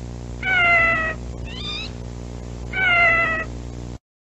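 A kitten meows twice, each meow a single call falling in pitch, with a short rising squeak between them. A steady low hum runs underneath.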